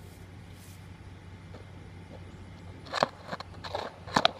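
Handling noise from a phone being set down against a wire-mesh fence: a sharp knock about three seconds in, then a few small clicks, over a steady low hum.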